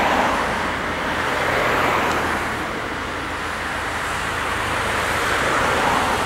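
Road traffic: cars driving past on a road, a steady rushing of engines and tyres that eases off midway and swells again near the end as another vehicle approaches.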